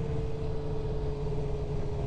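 Suzuki GSX-R sportbike's inline-four engine running at a steady cruise, one even drone with no change in pitch, with wind rumbling on the helmet microphone.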